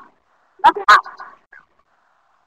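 A woman's voice speaking a few syllables, from a video played over the webinar's audio.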